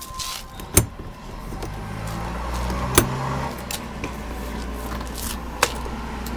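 Three sharp clicks about two and a half seconds apart over a steady low hum that sets in about a second in.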